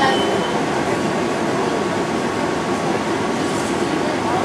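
Steady interior hum of a TTC transit vehicle heard from inside the cabin: running machinery and ventilation noise with a faint steady tone.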